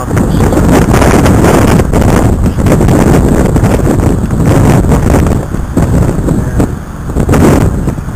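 Strong wind buffeting the microphone, a loud, uneven rumble with brief lulls.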